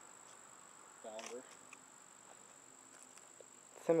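Insects trilling in one steady, unbroken high-pitched note, with a short murmured voice about a second in.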